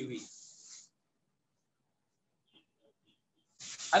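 A man's voice trailing off at the end of a word, then near silence for almost three seconds before he starts speaking again near the end.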